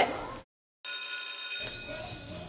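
After a brief dropout to silence, a bright bell-like electronic chime with many steady high pitches starts suddenly just under a second in, then drops in level about half a second later.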